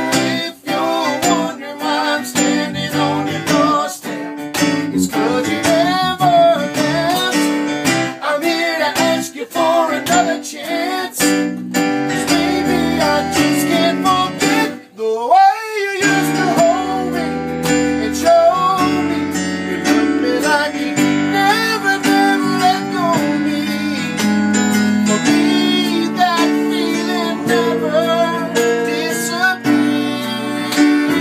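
Acoustic guitar strummed along with a digital keyboard playing piano chords, and a man's voice singing in places. The music drops away briefly about halfway through, then carries on.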